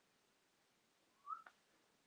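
Near silence: room tone, broken a little past halfway by a brief faint rising chirp and then a single click.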